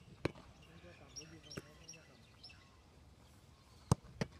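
A football is struck in a goalkeeper drill. There is a sharp thump just after the start as the kicked ball reaches the keeper, a lighter knock in the middle, and the loud thump of a volley kicked from the hands near the end. Birds chirp faintly in between.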